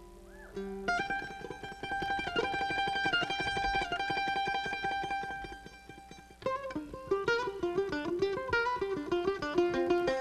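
F-style mandolin: a held chord picked in fast tremolo from about a second in, then, after a brief dip near the middle, a run of quick melodic picking.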